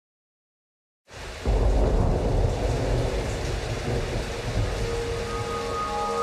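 Rain and thunder ambience starts suddenly about a second in: a steady hiss of rain over a deep rolling rumble. A single held vocal note enters near the end.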